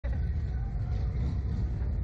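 A steady low rumble at an even level throughout.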